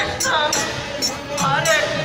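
Group devotional singing (kirtan) with small hand cymbals (kartals) striking in a steady rhythm.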